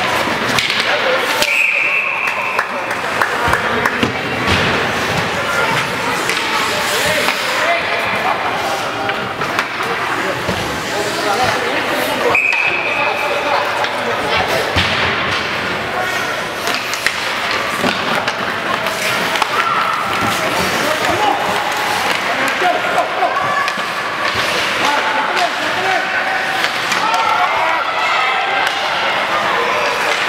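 Ice hockey game in an indoor rink: sticks and the puck clacking and knocking against the boards, with spectators' voices throughout. Two short, steady referee whistle blasts stop play, one about 2 seconds in and one about 12 seconds in.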